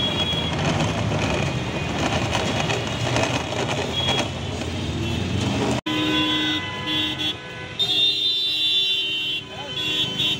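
Motor-driven juice blender running with a jar of mango juice on it, a dense steady whir. After a cut about six seconds in, street traffic with vehicle horns tooting.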